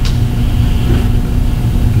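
Steady low rumble of room background noise with a faint hum, unchanging and with no other event.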